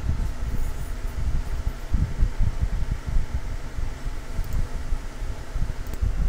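Low, irregular rumbling background noise on the microphone, with no distinct events.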